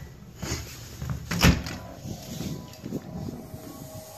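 A storm door being worked: light knocks and rattles of the handle and frame, with one sharp bang of the door about a second and a half in.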